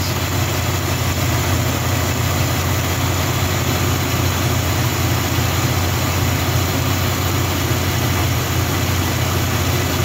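Pickup truck's gasoline engine idling steadily in the open engine bay, running fairly smoothly at the moment, though it runs worse the warmer it gets.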